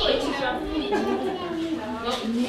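Women's voices talking in a room, several at once, with no clear words.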